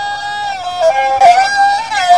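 Tai Lue khap folk music: a single wind instrument carries the melody between sung verses, holding long notes and stepping abruptly from one pitch to the next.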